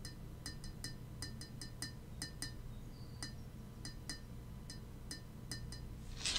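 Faint, light clinks or taps at an irregular pace, often in pairs, each with a short high ringing, over a steady low hum.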